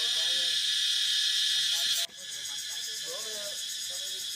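Steady, high-pitched insect drone with faint voices underneath; about halfway through it drops suddenly to a quieter level.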